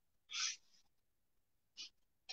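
A pause in a man's speech: mostly quiet, with one short soft hiss of breath about half a second in and a faint tick near the end.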